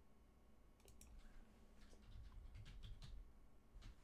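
Faint computer keyboard keystrokes: several short key clicks in small uneven bursts as a short word is typed.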